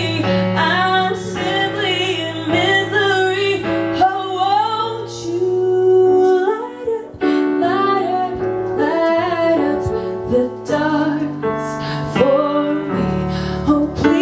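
A woman singing a song and accompanying herself on an electric keyboard, with some long held notes over sustained chords.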